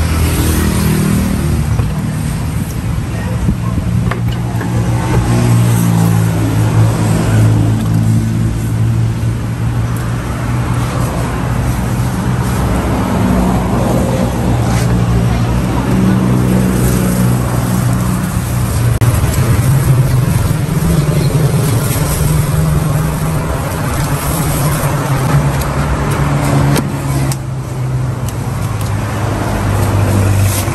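Road traffic: motor vehicle engines running steadily at the roadside, with their pitch shifting now and then as vehicles idle and move, and voices in the background.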